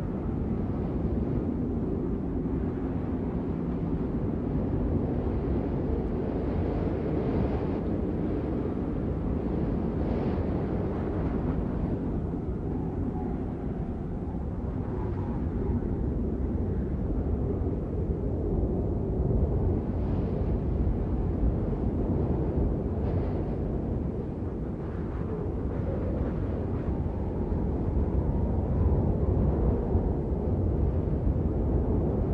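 A steady, deep rumbling noise with no clear pitch, rising a little near the end.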